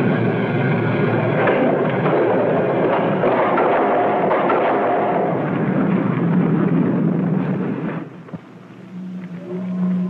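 Old film soundtrack: a loud, dense roar of fire sound effects mixed with the score, which drops away about eight seconds in. Sustained low musical tones follow.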